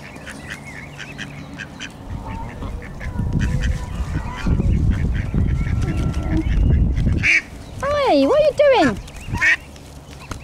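Waterfowl calling, Canada geese honking and ducks quacking, over a loud low rumble from about two to seven seconds in. Near the end comes a wavering call that swoops up and down in pitch.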